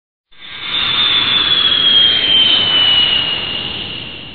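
Jet aircraft engine noise: a high whine over a rushing roar that slowly falls in pitch as the jet passes, fading away near the end.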